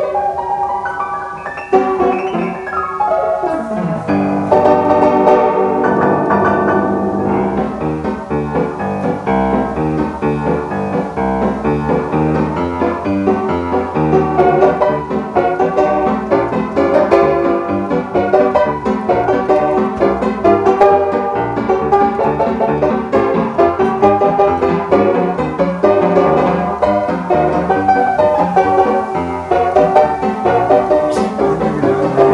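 Upright piano playing a jazz arrangement in the style of the 1920s–30s American silent-film pianists, dense with chords and running figures, with a fast descending run about two to four seconds in.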